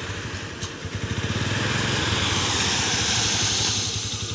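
Motorcycle engine running steadily at low revs, close by, with a hiss that swells through the middle.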